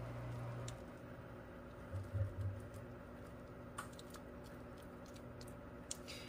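Silicone spatula scraping a soft cottage-cheese casserole mixture out of a bowl into a glass baking dish: quiet scrapes, soft knocks and scattered light clicks, over a faint steady hum.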